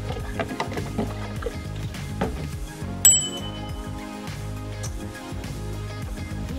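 Background music with a few light knocks, then a single bright ringing ding about three seconds in.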